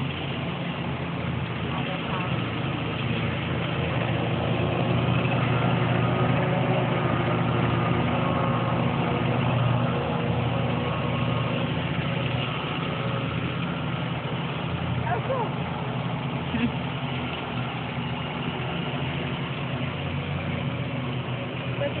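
Steady hum of honeybees buzzing from an opened hive as frames are pried loose and lifted out, a bit louder for a few seconds near the middle.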